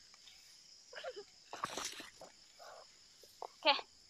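Night insects, crickets, chirring steadily in a high-pitched drone, with a brief rustle and rip of lemongrass stalks being pulled up by hand about two seconds in.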